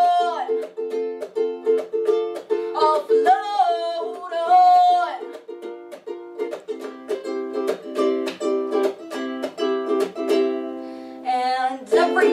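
Ukulele strummed in a steady rhythm, with a woman's voice singing over it from about three seconds in for a couple of seconds and again just before the end; the middle stretch is ukulele alone, with the room's echo.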